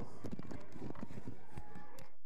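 Hoofbeats of a horse cantering on arena sand: a quick, irregular run of dull thuds.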